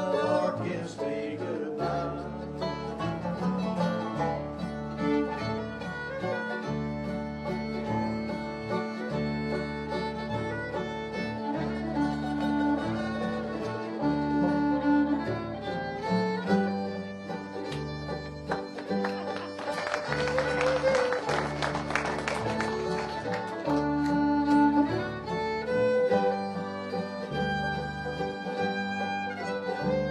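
Live bluegrass band playing an instrumental break on fiddle, banjo, acoustic guitar and mandolin, with no singing. From about halfway through, the fiddle is out front at the microphone.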